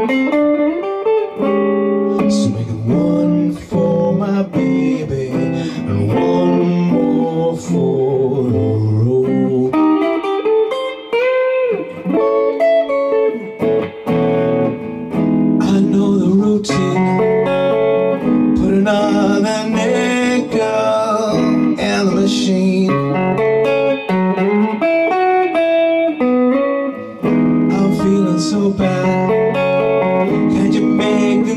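Solid-body electric guitar playing a slow, bluesy instrumental break, with melody lines and some bent notes over chords.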